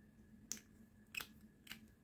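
Near silence broken by three faint small clicks from a lip gloss tube and its applicator wand being handled.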